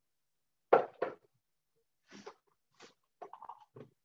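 Kitchen handling noise: a sharp knock about three-quarters of a second in and a smaller one just after, then a few faint rustles and clinks.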